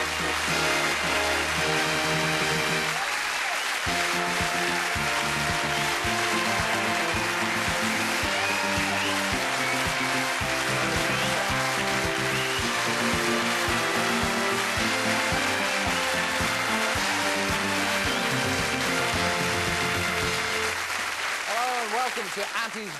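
Television show's opening theme music: an instrumental tune with a steady beat and changing held notes.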